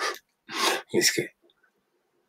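Three short, breathy vocal bursts from a man within the first second and a half.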